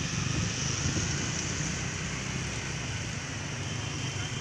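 Steady outdoor noise: a low rumble under a constant hiss.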